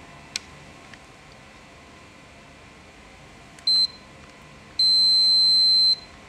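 Digital multimeter's continuity buzzer, its probes on a circuit board: a brief high beep about three and a half seconds in, then a steady high beep lasting about a second near the end. The beep sounds when there is continuity (very low resistance) between the probed points.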